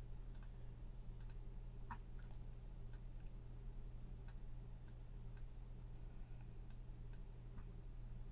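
Faint computer mouse clicks, about a dozen at irregular intervals with the sharpest about two seconds in, over a steady low hum.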